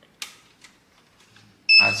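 A sharp click as the 3D-printed Tata Ace RC truck is switched on, a fainter tick after it, then near the end a steady high electronic beep from the truck's electronics at power-up.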